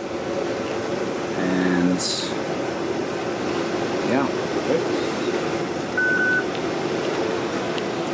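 Steady ventilation noise throughout, with a short muffled word about one and a half seconds in and a brief high beep about six seconds in.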